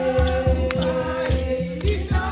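A choir singing a gospel song over a steady low drum beat of about two strokes a second, with a shaker rattling in time.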